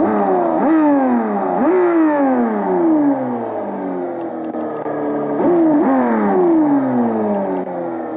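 Simulated car engine sound from an RC engine sound unit, played through a loudspeaker. It revs in sharp blips that glide slowly back down toward idle: two quick blips at the start and another pair about five and a half seconds in.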